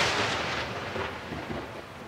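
A sudden rumbling burst of noise that fades away steadily over about two seconds.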